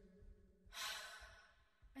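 A single breathy sigh, well under a second long, in the cartoon's voice track just before the next line of dialogue.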